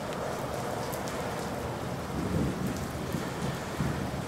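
Recorded thunderstorm ambience: a steady hiss of rain with low rumbling thunder underneath.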